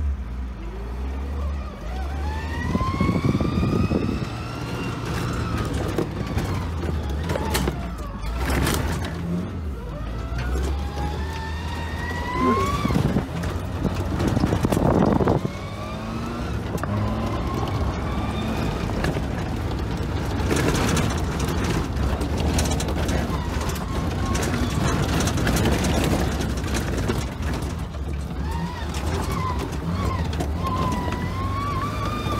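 Lifted Geo Tracker's four-cylinder engine heard from inside the cab while driving off-road: a whine repeatedly rises as it accelerates and drops back at the gear changes of its manual gearbox. Scattered knocks from the body and suspension over the rough track.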